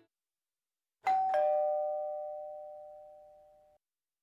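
Two-note ding-dong doorbell chime: a higher note about a second in, then a lower note a moment later. Both ring on, fade slowly and are cut off shortly before the end.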